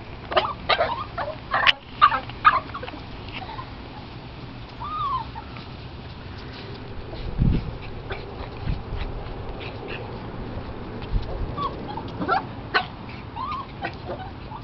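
Small dogs playing on dry grass, with rustling and scuffling and a few short whimpers and yips. A burst of sharp scuffles comes in the first couple of seconds, and there are some dull low bumps midway.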